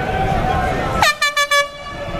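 A horn sounding a rapid string of short toots for under a second, about a second in, its pitch dropping sharply at the first toot. Crowd voices chatter around it.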